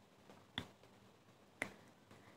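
Two short, sharp clicks about a second apart in otherwise near silence.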